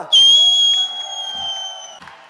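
A piercing whistle from the audience, starting suddenly and held for nearly two seconds, its pitch sagging slightly as it fades. It is a whistle of approval for a band member just introduced.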